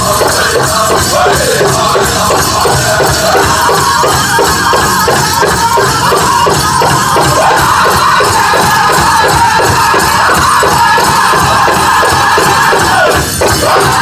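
Northern-style powwow drum group singing a contest song: several men's high voices in unison over a fast, steady beat on a big drum. The song breaks briefly near the end.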